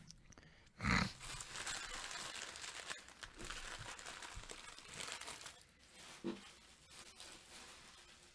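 Crinkling and rustling of handled trading cards and foil card-pack wrappers. It starts with a soft bump about a second in and fades out a little past halfway, with a small tap near the end.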